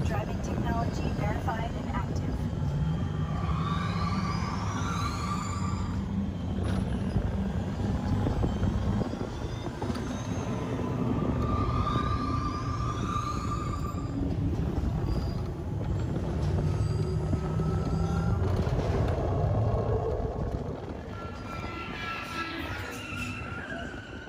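Test Track ride vehicle running along its track with a steady low rumble, while the ride's soundtrack plays electronic effects: rising sweeps about four seconds in and again about eleven seconds in. The rumble eases a little near the end.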